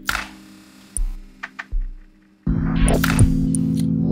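Minimal techno track: a sparse stretch of low kick thumps and short clicks, then about two and a half seconds in a loud, steady low synth chord comes in and holds, with clicks over it.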